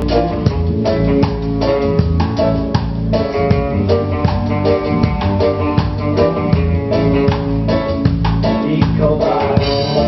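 Band music with drum kit, bass and guitar playing over a steady beat.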